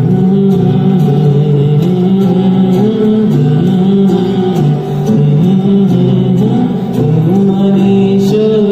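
Live acoustic guitar with dholak accompaniment: held melody notes stepping up and down over a regular beat of hand strikes, with a male voice singing along.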